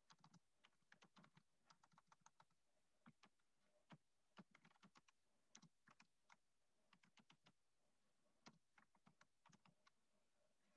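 Faint typing on a computer keyboard: quick, irregular runs of keystrokes, several a second, with a short pause about three quarters of the way through.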